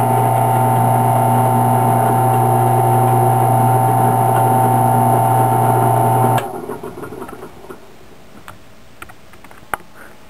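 Benchtop drill press running with a loud, steady hum and whine while a 1/16-inch bit drills the screw holes through a thin wooden fingerboard deck. The sound stops abruptly about six seconds in, leaving only a few faint clicks.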